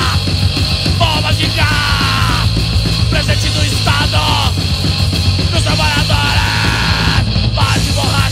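Hardcore punk song played by a bass-and-drums duo: bass guitar and drum kit, with yelled vocals.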